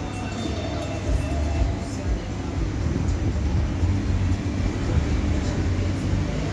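Steady low rumble with indistinct background voices, a continuous ambient din with no distinct events.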